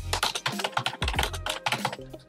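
Typing on a computer keyboard: a fast, irregular run of key clicks, over quiet background music.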